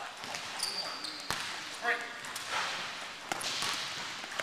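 Basketball shoes squeaking and landing on a hardwood gym floor during a quick side-to-side shuffle drill: one short high squeak about half a second in and a sharp thud just after a second.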